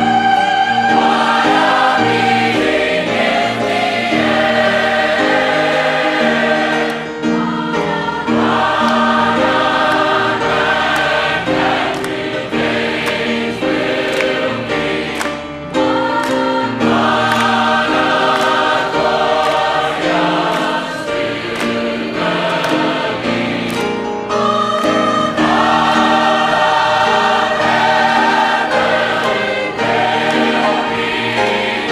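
Large mixed choir singing a southern gospel song with piano accompaniment, in long phrases separated by brief breaths about every eight seconds.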